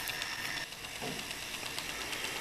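Faint steady hiss of room noise with a thin high whine that cuts off suddenly about two-thirds of a second in.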